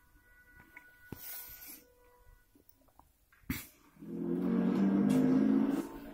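Soundtrack of a video playing through a TV or phone speaker: faint steady tones and light clicks, a sharp click, then a louder pitched sound of several tones for about two seconds that cuts off abruptly near the end.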